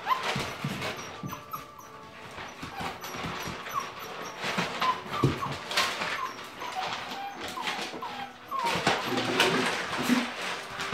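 Young puppies whimpering, with many short high whines and squeaks, mixed with the scuffle and clicking of their paws on the board floor and pellet litter.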